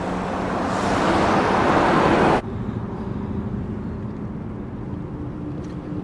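Car passing close by, its road noise swelling for about two seconds and cutting off suddenly, followed by a steady low engine and road hum heard from inside a moving minivan.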